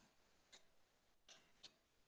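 Near silence broken by three faint computer keyboard keystrokes, spaced irregularly over two seconds.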